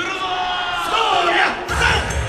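A break in the yosakoi dance music: the drum beat drops out and voices give a drawn-out shouted call, then the beat comes back in near the end.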